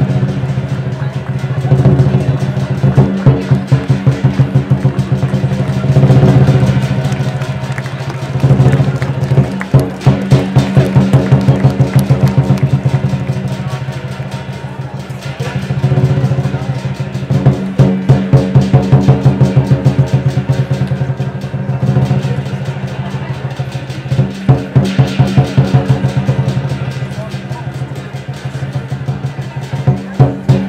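Chinese lion dance drum beaten in fast, even strokes, with the drumming swelling louder and easing off in several surges.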